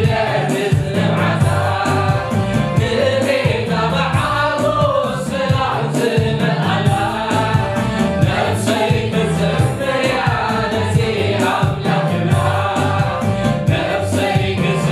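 Gospel choir and male lead singer singing a Tigrinya worship song into microphones over amplified instrumental backing with a steady beat.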